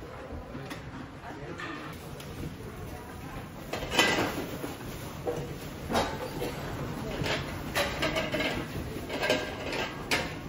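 Large wheeled bins rolling across a tiled floor: casters rumbling with several sharp knocks and clatters, the loudest about four seconds in. Faint voices underneath.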